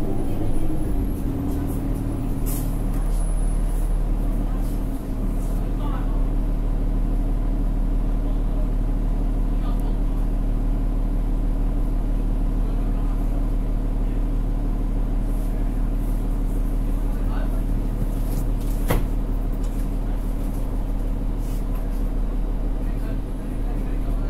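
Cummins ISL9 diesel engine of a 2010 New Flyer D40LF city bus running at a steady, unchanging pitch, a low hum heard from inside the passenger cabin. A few light clicks and rattles come through, near the start and again later.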